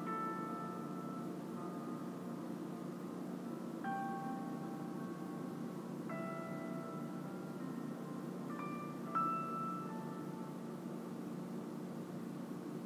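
Soft ambient meditation music: a low steady drone with sparse bell-like notes that ring and fade, struck every two to three seconds, the loudest one about nine seconds in.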